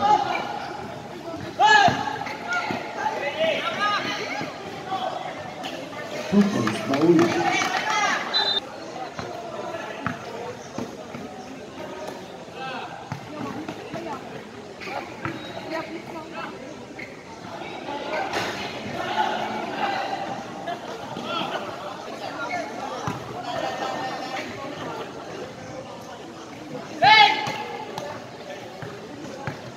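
Sounds of a live basketball game: players and spectators calling out around the court while the ball bounces on the floor. Loud calls rise about two seconds in and again near the end.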